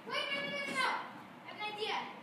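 A child's high-pitched voice giving two wordless calls: the first lasts about a second, and a shorter one comes near the end.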